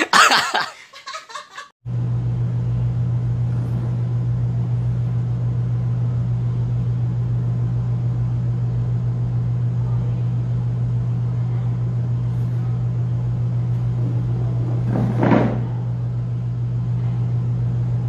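Laughter that cuts off about two seconds in, followed by a steady low hum with a faint rushing noise. One short louder sound comes about three-quarters of the way through.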